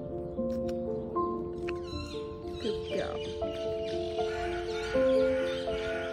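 Background music, a melody of held notes. A short gliding, voice-like sound rises and falls over it between about two and three seconds in.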